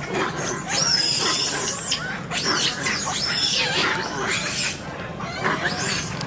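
Long-tailed macaques giving a series of high-pitched squeaky calls, each rising and then falling in pitch.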